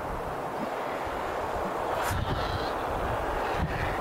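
Steady rushing noise of wind on a handheld camera microphone outdoors, with a faint low rumble underneath.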